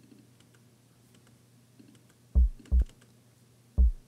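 Faint clicks from a computer keyboard and mouse, then short, loud, low bass notes from a house-track bass line played back to find a pop: two about half a second apart past the middle, and a third just before the end.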